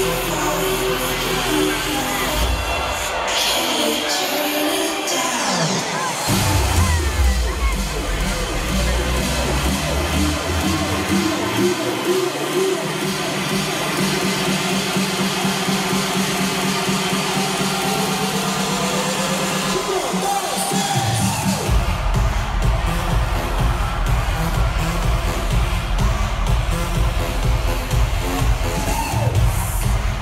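Loud electronic dance music through an arena sound system, heard from inside the crowd, with crowd cheering. The bass drops out twice in the first half, a rising sweep builds for several seconds, and the full bass-heavy beat comes back in about two-thirds of the way through.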